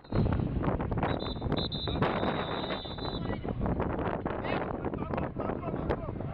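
Wind buffeting a camcorder microphone beside an American football field, with indistinct players' voices. About a second in, a thin high tone starts and holds for about two seconds.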